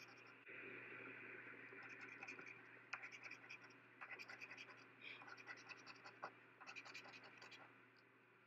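Faint scratching of a coin scraping the coating off a scratch-off lottery ticket, in stretches of quick strokes with short pauses between them.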